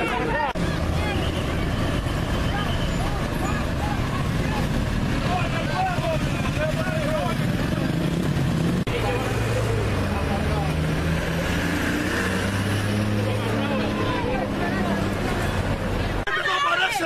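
Road traffic close by: the engines of a truck, motorcycles and cars running and passing, with a steady low engine hum. Voices sound underneath.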